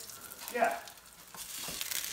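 Homemade meatless burger patties sizzling in hot fat in a nonstick frying pan, the crackle growing louder in the last half second.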